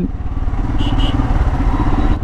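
Motorcycle engine running steadily at low speed in traffic, with wind noise over the helmet microphone. Two short high beeps sound about a second in.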